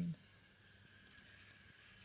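Faint, steady high whine of a small robot car's two geared DC motors as it drives, over low hiss. A spoken word ends right at the start.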